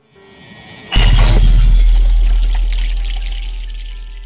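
End-credits music stinger: a swell builds for about a second into a sudden loud hit, a deep boom with a bright shimmering crash on top, that slowly dies away.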